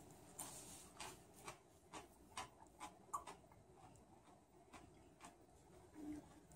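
Faint mouth clicks of a fresh Cumari x Naga hybrid chili pod being chewed, about two chews a second with a short pause near the middle.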